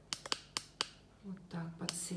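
About five sharp, light clicks in quick succession in the first second, followed by a woman's voice starting to speak.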